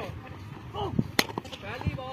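A bat striking a tape-wrapped tennis ball: one sharp crack about a second in, the shot that goes for four.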